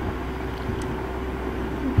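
Steady low background hum over faint even noise, with one short thump near the end.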